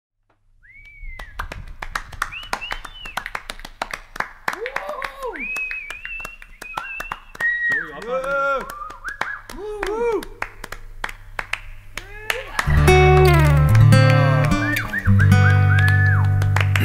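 An audience clapping and cheering with whoops. About three-quarters of the way through, an acoustic guitar comes in, playing chords with deep bass notes.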